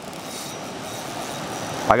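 Rushing water of a creek rapid, a steady hiss that grows slowly louder.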